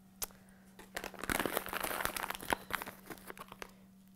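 Candy packaging crinkling as pieces are taken out: one sharp click, then a dense run of crackles lasting about two seconds.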